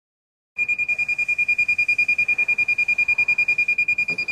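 Handheld moisture meter beeping rapidly, about ten high-pitched beeps a second, starting about half a second in. The alarm signals a high moisture reading: the boat's deck core is still wet despite days of heating.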